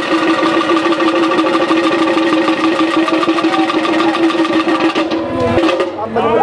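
Traditional temple procession music: one steady held tone over fast, even drumming.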